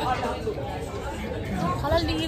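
Chatter: people's voices talking in the background, with no other distinct sound.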